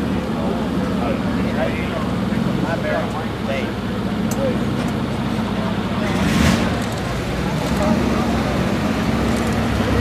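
Aston Martin Vanquish S V12 engine running at low revs as the car pulls away slowly, with a brief louder swell about six and a half seconds in.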